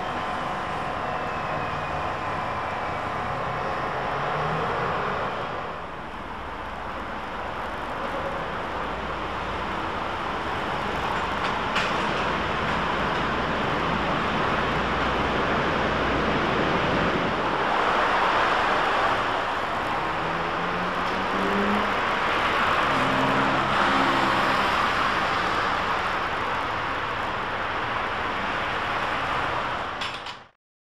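Steady road-traffic noise at a trolleybus stop. About six seconds in it changes to the ambience of a railway station platform: an even rushing noise with a click near the middle and a few short low pitched sounds later on.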